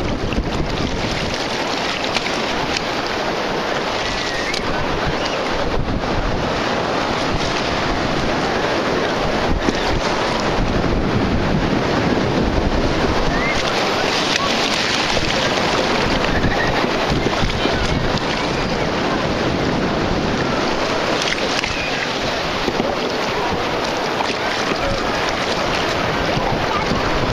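Wind buffeting the microphone over steady surf and shallow water washing at the shoreline, on a rough-surf day.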